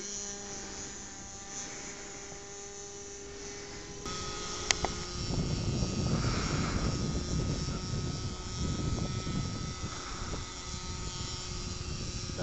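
Motor of a radio-controlled autogyro droning in flight overhead, heard as a steady whine of several held tones. About four seconds in, a louder low rumble joins it, with a single sharp click shortly after.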